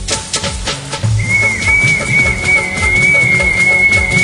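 Song's instrumental backing track with a steady drum beat and, from about a second in, one long high whistle-like note held to the end.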